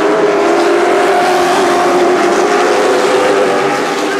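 Stock car engines running at racing speed as a pack of cars goes by on a paved oval: a loud, steady engine drone.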